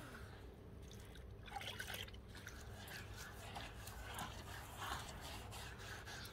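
Faint, irregular wet wiping of a damp sponge over basalt paving slabs, cleaning off the dirt left from laying them.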